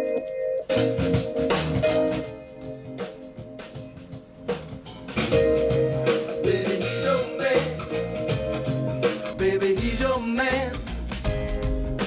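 Funk-rock band recording playing, with a steady drum beat; a voice comes in singing near the end.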